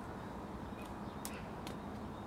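Quiet outdoor background noise: a steady low rumble with a few faint clicks.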